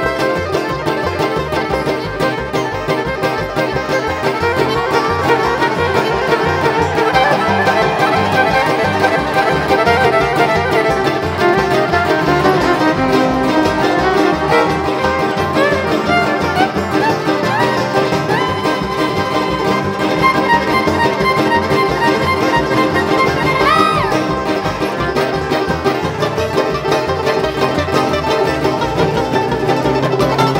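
Live bluegrass string band playing an instrumental break: fiddle, banjo, mandolins, acoustic guitar and upright bass together at a driving tempo, with sliding high notes on top.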